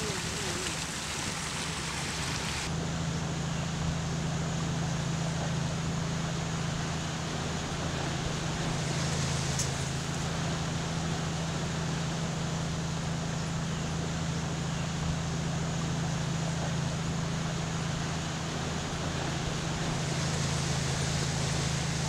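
A boat's motor running steadily, a constant low hum under a wash of water and air noise, the hum growing stronger about three seconds in.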